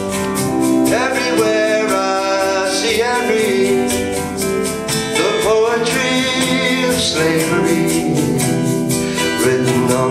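A folk band playing live: strummed acoustic guitar keeping a steady pulse under sustained keyboard chords, with a melody line coming and going over them.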